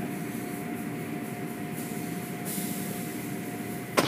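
Automatic tunnel car wash running as its hanging cloth curtains wash a pickup truck: a steady rumble of machinery and water spray with a thin steady whine under it, and a brief high hiss about two and a half seconds in.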